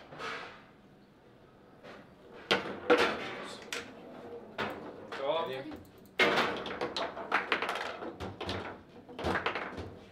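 Table football play: a string of sharp knocks and clacks as the ball is struck by the plastic players and hits the table, with rods being jerked and slammed, and a goal scored during the play. A short voice is heard about halfway through.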